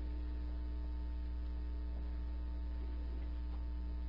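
Steady low electrical mains hum with a ladder of faint, evenly spaced overtones above it.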